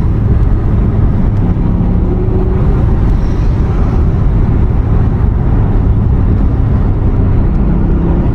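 Cabin noise of a Toyota GR Yaris driving at a steady speed: road and tyre noise with the 1.6-litre turbocharged three-cylinder engine running evenly underneath, heard from inside the car.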